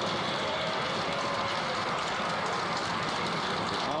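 Many members of parliament applauding, a dense steady clatter of hands, with faint voices underneath.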